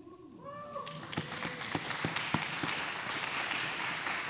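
Guests whoop and clap. One drawn-out cheer rises and falls at the start, then applause builds about a second in and continues steadily.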